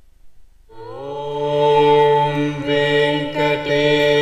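Voices begin chanting a Hindu temple mantra in unison a little under a second in, on long, steady held notes. Before that there is only faint room tone.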